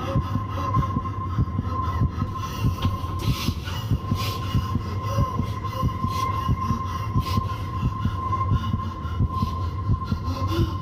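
Dark film-soundtrack drone: a low rumble under a steady high tone, with quick, uneven low thumps pulsing through it.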